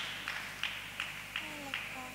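Audience applause dying away, leaving a few evenly spaced claps about three a second, with faint voices in the second half.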